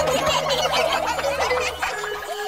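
Cartoon sound effects: a rapid, warbling, gobble-like chatter of quick pitched squiggles over a low steady drone.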